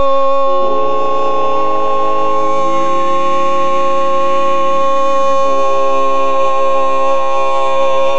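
Barbershop quartet of four men singing a cappella, holding one long final chord: the top notes stay steady while the lower voices shift beneath them twice, changing the chord.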